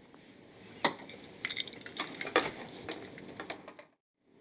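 Hand tools and cable being handled on a workbench: light handling noise with a scattered handful of sharp clicks and clinks of metal. The sound cuts off abruptly just before the end.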